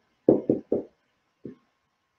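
Dry-erase marker writing on a whiteboard on an easel: a few short, soft knocks as the marker strokes strike the board, four of them in the first second and a half.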